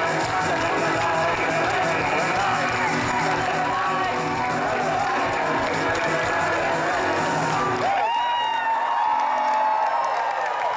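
Live band music with a steady beat, played over a sound system to a large crowd. About eight seconds in, the music's low end drops away and the crowd cheers and whoops.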